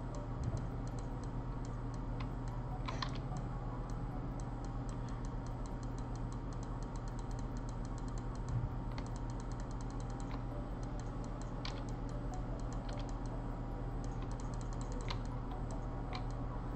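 Computer keyboard keys clicking in irregular runs over a steady low hum.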